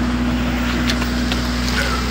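Steady low machine hum holding one constant pitch, with a few faint clicks.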